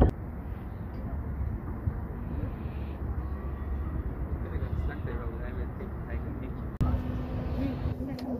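Outdoor ambience across several short clips: a steady low rumble with faint voices in the background. It changes abruptly about three seconds in and again near the end, where a steady hum comes in.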